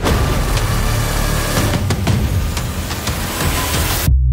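Horror-trailer sound design: a loud, dense rush of noise over a deep rumble, with a few sharp hits, that cuts off suddenly at the end.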